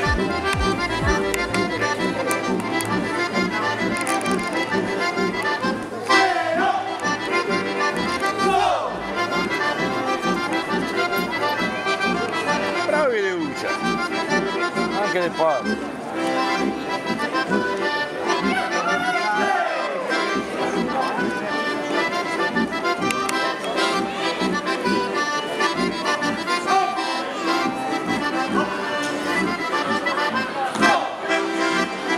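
Accordion playing a traditional folk dance tune, with a steady, even beat in the bass, accompanying couples dancing.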